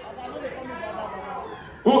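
Murmur of people talking in a large hall, then a man's voice on the microphone starting loudly near the end.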